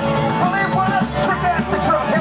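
Live band with drum kit and acoustic guitars playing a rock and roll song, with a bending lead melody coming in about half a second in.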